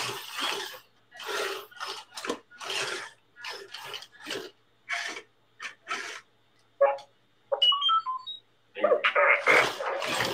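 A small R2-D2-style toy robot droid running, with a string of short bursts of noise followed, about three quarters of the way in, by a quick run of electronic beeps and chirps at stepping pitches. Voices and laughter start near the end.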